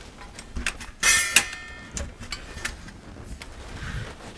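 Thin titanium stove plates clicking and clinking together as the front plate's interlocking notches are worked into the side plates by hand. About a second in, one louder metallic clink rings briefly.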